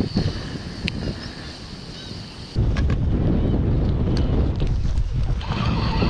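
Wind buffeting the microphone, a heavy low rumble that eases for the first couple of seconds and then comes back abruptly.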